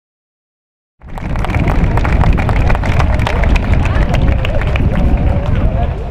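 People's voices over a loud, rumbling background, cutting in abruptly about a second in, with many sharp clicks through it.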